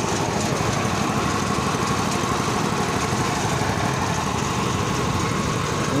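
BADJA rice thresher running steadily, its small engine driving the threshing drum and blower fan, with a faint steady whine over the even running noise.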